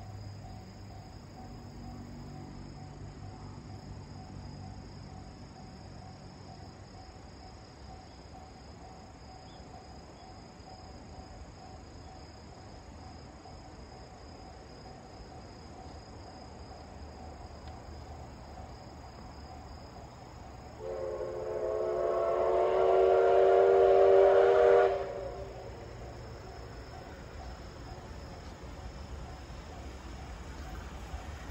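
Steam locomotive whistle blowing one long blast of several tones together, about four seconds, growing louder and then cutting off sharply. Insects chirp steadily throughout.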